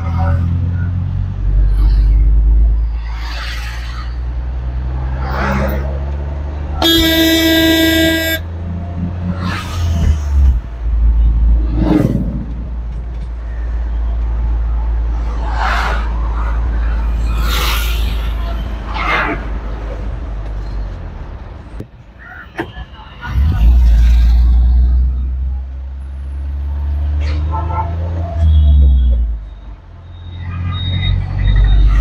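Tata Intra V20 bi-fuel pickup's 1199 cc engine running steadily while being driven, the engine note dropping briefly a little after twenty seconds and then picking up again. A vehicle horn sounds once about seven seconds in, lasting just over a second.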